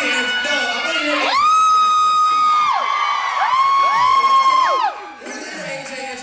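Two long, high-pitched "woo" cheers from a voice, each rising, held for over a second, then falling away, over a crowd cheering.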